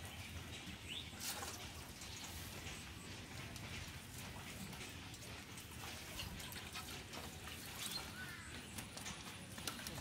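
Faint splashing and sloshing of water with small knocks as fish are scooped by hand out of a metal pot of water.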